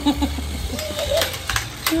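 A short, gliding vocal sound about a second in, then laughter starting near the end.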